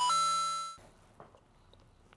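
A bright, bell-like chime sound effect: one ding with several steady overtones that starts abruptly and dies away within about a second.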